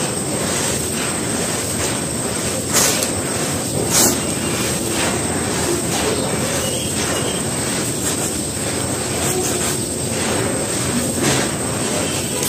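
Dry sand-and-dirt lumps crushed by hand and sifting through the fingers onto dry sand: a steady gritty rustle, with two brief louder crunches about three and four seconds in.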